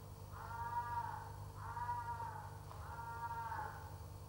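Three high-pitched animal calls in a row, each about a second long, rising slightly and then falling, over a steady low hum.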